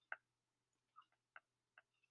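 Faint light ticks of a stylus tapping on a tablet screen during handwriting: about five short, uneven taps over near silence.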